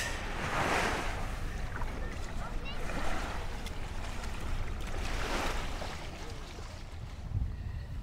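Small waves washing over the sand at the water's edge in shallow sea water, surging three times a couple of seconds apart. Wind rumbles on the microphone underneath.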